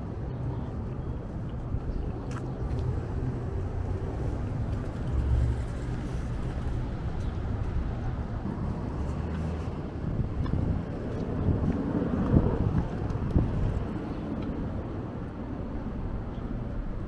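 Outdoor city street ambience: a steady low rumble of road traffic, swelling about eleven seconds in as a vehicle passes, with a couple of short knocks near the loudest point.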